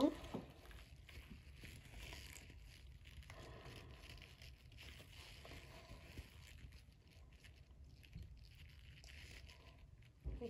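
Faint, thin trickle of castor oil pouring from a glass container into a plastic measuring jug of oils, with a few small ticks.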